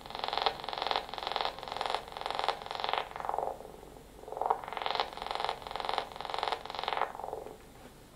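A homemade Arduino-based synthesizer sounds a buzzy tone that pulses about twice a second. It dulls around the middle, brightens again, then fades out shortly before the end.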